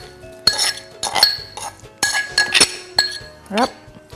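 Metal spoon clinking and scraping against a porcelain mortar and a glass mixing bowl as pounded garlic and scallion paste is knocked out of the mortar: a run of sharp, irregular clinks, each with a short ring.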